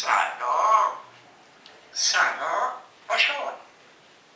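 African grey parrot vocalizing in three short bursts, the first about a second long, the next about two seconds in, and a brief last one just after three seconds.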